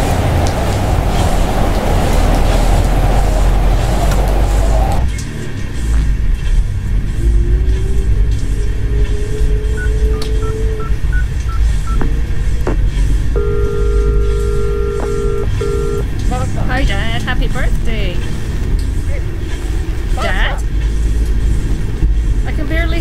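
Steady low rumble of a car interior with the engine running. A rushing noise for the first few seconds stops abruptly. In the middle come a few short phone keypad beeps, then a phone ringing tone for a few seconds, then snatches of a voice near the end.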